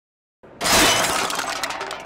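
A sudden loud crash of shattering glass and clattering debris about half a second in, dying away over a second or so: the dismantled machine's pieces being thrown into a dumpster.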